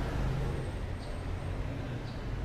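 Steady low background rumble and hum, with a faint thin high tone briefly in the middle.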